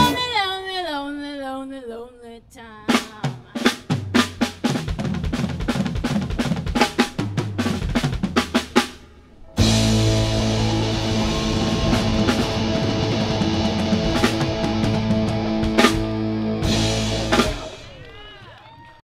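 Live rock band with electric guitars, bass and drum kit: a held note slides down in pitch with a wavering vibrato, then the drums play a fill of separate hits on their own for several seconds. About halfway through the full band comes crashing back in on a loud, sustained chord with cymbals, the song's closing chord, which stops just before the end.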